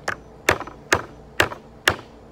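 Claw hammer striking nails in an old wooden board: four sharp blows, about two a second.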